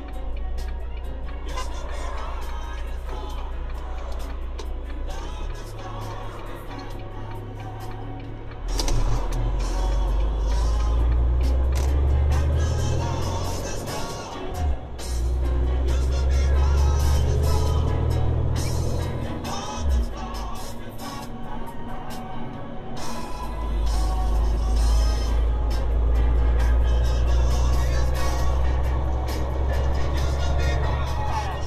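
Music with a heavy bass line playing from a radio inside a moving vehicle's cab, over road noise.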